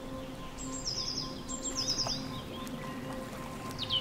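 Bird calls over soft background music: two quick runs of short, high, falling chirps about a second in and again a moment later, and one sharp falling call near the end, with steady held musical tones underneath.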